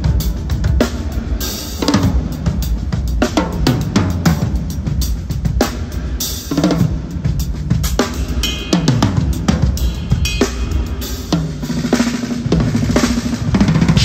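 DS Drum Rebel maple-walnut drum kit with Sabian cymbals played in a steady groove: kick, snare and cymbal strokes, with tom hits whose pitch drops after each stroke.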